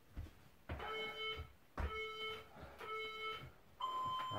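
Workout interval timer counting down: three identical beeps about a second apart, then a longer, higher-pitched final beep near the end marking the end of the 30-second work interval. Soft thumps of hands and feet on a wooden floor come in between.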